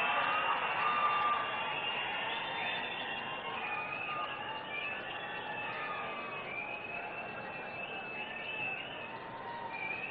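A crowd cheering and calling out, with many overlapping long, wavering high tones, slowly dying down.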